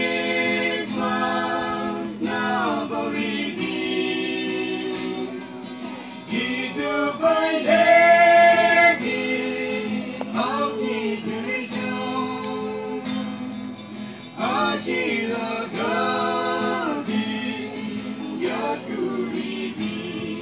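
A small group of men and women singing a Nagamese song together to a strummed acoustic guitar, loudest on a long held note near the middle.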